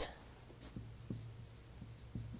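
Dry-erase marker writing on a whiteboard: a run of faint, short scratches of the tip on the board.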